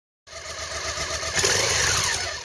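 An engine revving. It starts suddenly about a quarter of a second in, with a falling whine near the end.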